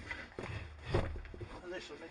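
Knocks and rustling from a man leaning on the cockpit edge of a light aerobatic plane and climbing aboard, picked up through the airframe with a low rumble. The loudest knock comes about a second in, and a few indistinct spoken sounds follow.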